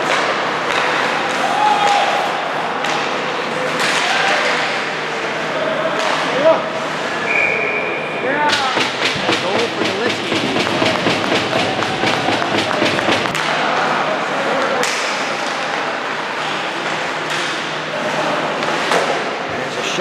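Ice hockey rink sound: voices from players and spectators over skates and sticks on the ice. A referee's whistle blows briefly about seven seconds in, and right after it a long run of clapping and knocking starts, typical of a crowd reacting to a goal.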